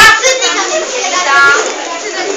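Young children's voices talking and calling out, loud at the start and then quieter.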